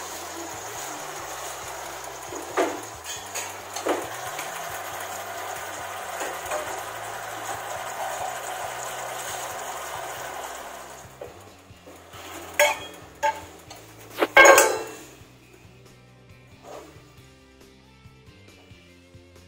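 Leafy greens sizzling in a stainless steel pan, a steady hiss that fades out about two-thirds of the way through. After it, a few sharp knocks and clinks of a wooden spatula against the pan, the loudest near the end, over soft background music.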